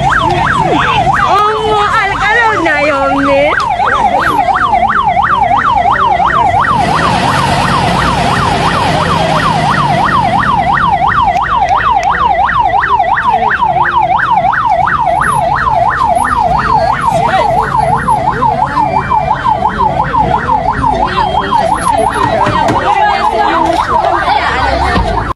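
Convoy escort vehicle's siren sounding a fast yelp, its pitch sweeping up and down about four times a second without a break. Voices come through early on, and there is a rushing noise for a few seconds about a third of the way in.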